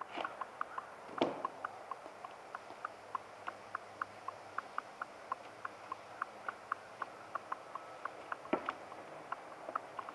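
A man's shoes knocking on a 2x2 wooden board laid across two cinder blocks: a louder knock about a second in as he steps up onto it, and another near the end as he steps off; the board takes his weight without breaking. Throughout, faint short ticks repeat about three times a second.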